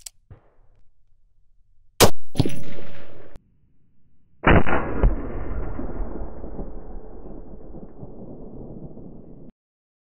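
A single loud rifle shot from a CMMG Resolute carbine in 350 Legend about two seconds in, followed at once by a short metallic ring. A second, duller boom comes about two and a half seconds later; its long fading tail cuts off suddenly near the end.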